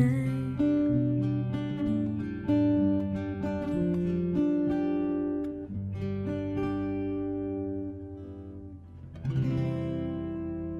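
Instrumental acoustic guitar music with plucked and strummed chords, gradually fading. A new, louder chord enters about nine seconds in.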